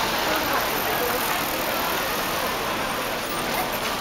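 Cars passing close by on a street: a steady wash of traffic noise, with people's voices mixed in.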